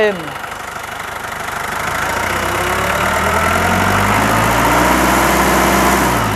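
Nissan 2-ton forklift engine running smoothly, then revved: the throttle opens about two seconds in, the engine speeds up and holds, then starts to ease back near the end. No abnormal knocking as it revs, which the seller takes as a sign of a sound engine.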